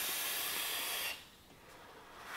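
A steady hiss from a long drag on a Digiflavor Pilgrim GTA/RDTA rebuildable atomizer: air rushing in through its airflow and over the firing coil. It stops about a second in, and a softer breathy exhale begins near the end.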